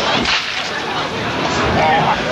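A sharp smack of a blow landing in a pro-wrestling ring, about a quarter of a second in, with voices from the hall around it.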